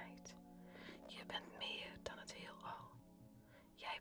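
A quiet whispered voice reading, over faint background music with a steady low held tone.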